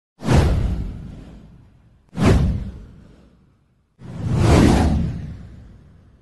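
Three whoosh sound effects for a title-card intro: two sudden ones about two seconds apart, each fading away, then a third that swells up more gradually before fading out.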